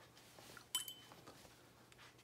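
A single light clink with a short high ring, about three-quarters of a second in, against quiet room tone.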